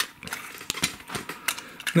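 Clear plastic cassette case and cassette shell being handled and opened: a string of light, irregular plastic clicks and taps.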